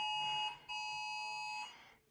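Mobile phone emergency alert tone: a steady, high-pitched beep sounding in pulses, one short and then one about a second long that fades out near the end.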